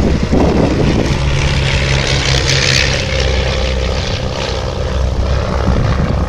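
de Havilland Chipmunk and Miles Magister, both with four-cylinder de Havilland Gipsy Major piston engines, droning steadily as they fly past in formation. Their engine and propeller noise swells into a rushing sound about two to three seconds in.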